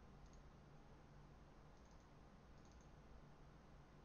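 Near silence with a few faint computer mouse clicks: one near the start, then several more, some in quick pairs, around two to three seconds in.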